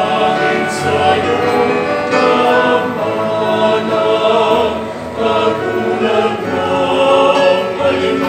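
Small mixed choir singing a Filipino Catholic hymn in parts, accompanied by a digital piano, continuous and full throughout.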